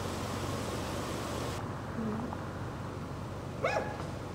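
A dog barks once, briefly, near the end, over steady background noise.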